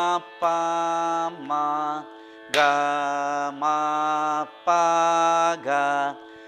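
Male Carnatic vocalist singing the sol-fa syllables (swaras) of a middle-octave varisai exercise in raga Mayamalavagowla. Each note is held steady for about half a second to a second, with short breaks between them.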